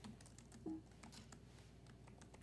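Faint, quick keystrokes on a laptop keyboard: a run of typing.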